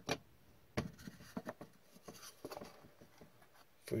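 Trading cards and white cardboard pack cases being handled on a tabletop: faint light taps, clicks and short slides. One sharper tap comes at the start, and a run of small clicks falls between about one and three seconds in.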